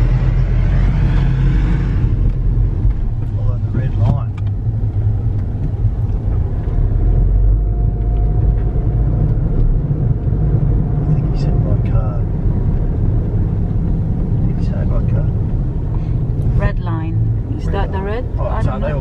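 Car engine and tyre noise heard from inside the cabin while driving: a steady low rumble.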